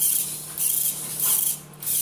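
Small electric motor and gears of a model crane's winch running in several short spurts, with a grinding, hissing whine, as it hoists a hanging dumbbell weight.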